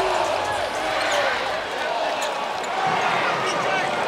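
Arena crowd murmuring steadily, many voices blended, with a few faint knocks from the court.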